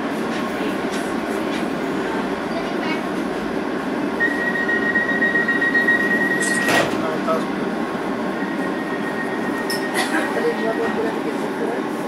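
B2007 Stock Docklands Light Railway train running, heard from inside the car: a steady rumble of wheels on track. A thin, high, steady squeal holds for about two and a half seconds near the middle and returns more faintly later. A sharp click comes just as the first squeal stops.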